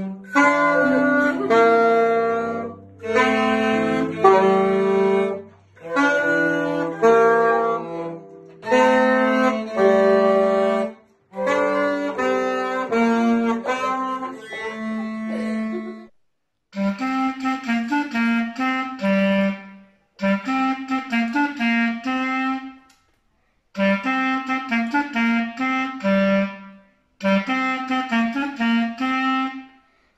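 A digital piano with other instruments plays phrases of chords and sustained notes, separated by short breaks. About halfway through, it gives way to a solo clarinet playing phrases of quick notes, with brief pauses between them.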